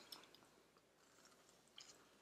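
Near silence, with faint soft chewing of a chocolate chip cookie and a few tiny mouth clicks near the end.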